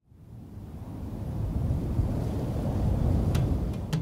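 Low, rumbling wind noise, most likely a sound effect of wind blowing over sand dunes. It swells from nothing over about three seconds and then holds steady.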